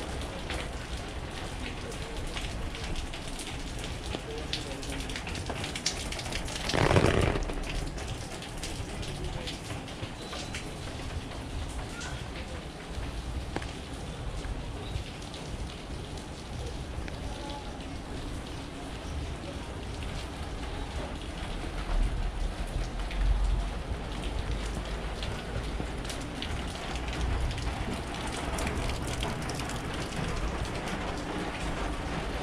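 Steady rainfall, with a brief louder burst of noise about seven seconds in and a low rumble a little past twenty seconds.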